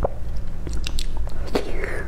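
Close-miked mouth sounds of biting into and chewing a soft caramel custard pudding: scattered short clicks and smacks over a low steady hum.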